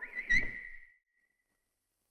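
A single high whistle-like note that swells briefly about a third of a second in and then dies away within about a second and a half, with a short low rumble under the swell.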